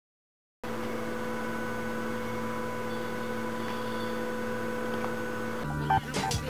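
A steady electrical-sounding hum made of several held tones, starting about half a second in after silence and changing shortly before the end as the track's music comes in.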